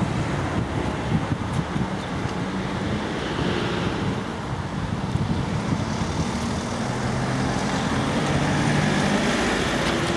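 Road traffic passing on a street, with wind buffeting the microphone. From about two-thirds of the way in, a vehicle engine's steady hum comes up and grows a little louder.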